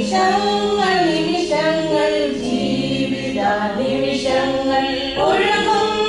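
A small group of women singing a hymn together, moving between long held notes.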